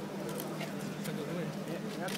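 Indistinct chatter of several people over a steady low hum, with a few short sharp clicks.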